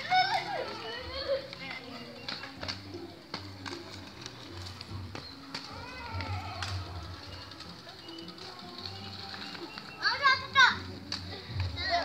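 Children's high voices calling out, once at the start and again about ten seconds in, over background music with a stepping bass line.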